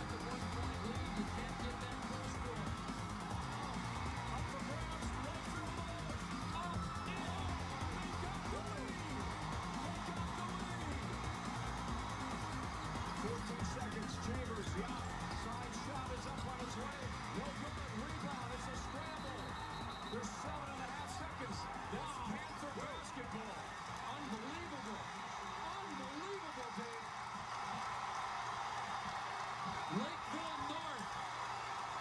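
Background music over basketball-arena crowd noise, with indistinct voices in the crowd. The music's low end fades out near the end while the crowd noise swells.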